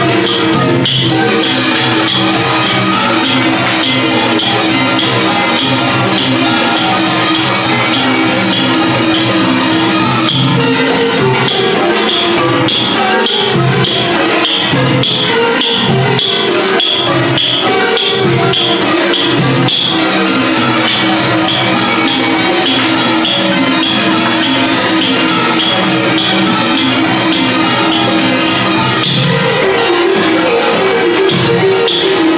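Thai classical ensemble music played by children on khim hammered dulcimers and ranat xylophones with drums: a continuous, busy melodic piece of struck metal and wooden notes over a steady tapping beat.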